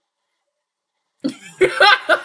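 A woman laughing in a few short, cough-like bursts that start about a second in.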